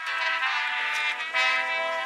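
Marching band brass section playing sustained held chords, moving to a new chord about one and a half seconds in.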